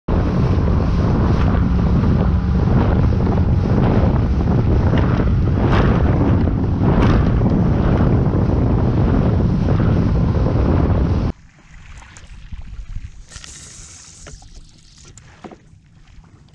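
Bote Rover inflatable microskiff running at speed: outboard motor, rushing water and spray, with heavy wind on the microphone. This cuts off suddenly about eleven seconds in, leaving a much quieter stretch of faint water sounds and small knocks as the craft drifts.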